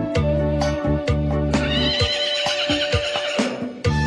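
Balinese pop song, instrumental passage with a steady bass-and-drum beat under a long held note. About two seconds in, the bass drops out and a high wavering sound rises and falls for over a second, before the full band comes back in near the end.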